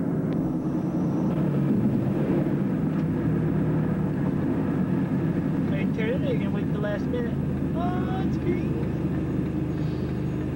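Steady engine and road rumble inside a moving car. Short voice-like pitched sounds come in from about six seconds in.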